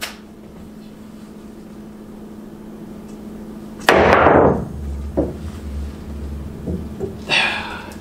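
A pool cue strikes the cue ball for a jump shot about four seconds in, a sharp crack, followed by a low rumble of balls rolling on the table and a couple of lighter knocks of balls meeting. The shot just misses.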